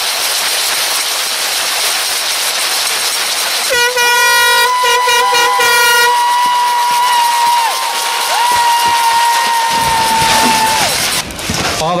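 A crowd cheering, joined from about four seconds in by an air horn sounding in long held blasts over the cheering for some seven seconds.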